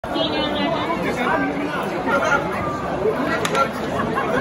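Spectators talking near the microphone, several voices overlapping, with a sharp click about three and a half seconds in.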